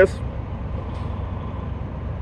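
Steady low rumble of an idling vehicle engine, with a faint hiss above it.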